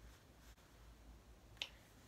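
Near silence: room tone, with one short click about one and a half seconds in.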